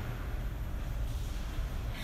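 A steady low rumble from a vehicle display turntable turning under the car.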